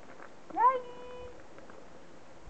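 A cat meows once, a short rising call about half a second in.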